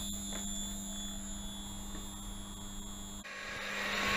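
Vacon frequency converter running as a standalone battery-fed grid converter, idling with no load: a steady low electrical hum and a high-pitched whine over fan noise. A little past three seconds the whine stops and a louder, even rushing noise takes over.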